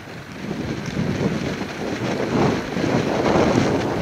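Wind rushing over the camera microphone on a moving bicycle, growing steadily louder over the first few seconds.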